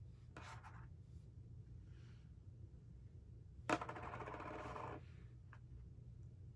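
Faint handling of a product and its packaging: a brief rustle just after the start, then, a little past the middle, a sharp click followed by about a second of scratchy scraping, and a small click near the end.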